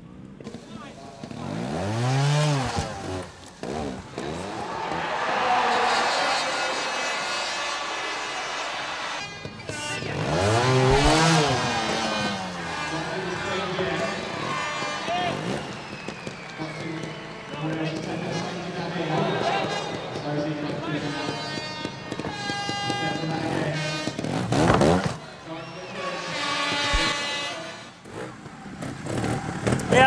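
Trials motorcycle engine revving in short blips, each rising and falling in pitch, loudest about two seconds in and again about eleven seconds in.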